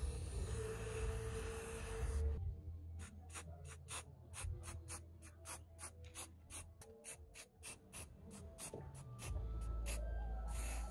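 Aerosol spray can hissing as a glossy coat is sprayed onto a wooden axe handle, stopping about two seconds in. Then a steady run of short clicks, about four a second, typical of the can's mixing ball rattling as it is shaken.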